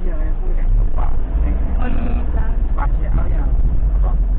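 Indistinct talk inside a moving ambulance's cab over the steady low rumble of its engine and the road.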